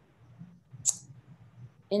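A single short, sharp click about a second into a pause in speech, over faint background noise; a voice starts again at the very end.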